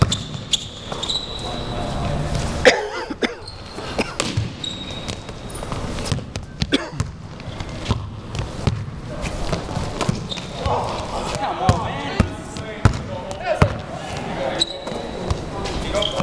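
A basketball dribbled and bouncing on a hard gym floor, a run of sharp thuds, with short high sneaker squeaks and players' indistinct voices and shouts.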